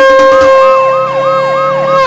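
Ambulance siren coming in suddenly: a steady high tone with a fast up-and-down yelp repeating about four times a second.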